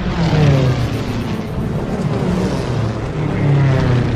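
Propeller warplanes' piston engines droning as they fly low past, the pitch falling as each passes, loudest about half a second in and near the end.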